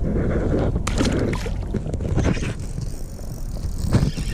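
Water sloshing and gurgling against a kayak hull, with a short splash about a second in as a largemouth bass is let go into the water, over a steady low wind rumble on the microphone.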